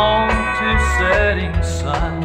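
Country record playing an instrumental fill between sung lines: plucked guitar over steady bass notes, with a lead line whose notes slide up and down in pitch.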